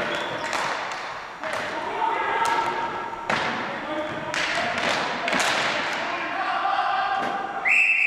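Ball hockey play on a hard gym floor: repeated sharp clacks and thuds of sticks and ball, with players calling out. Near the end a referee's whistle blows one long steady blast, stopping play.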